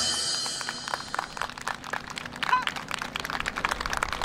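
Recorded yosakoi dance music with guitar and drums, played over a loudspeaker, ends in the first half second. Then scattered audience clapping follows, with a few voices.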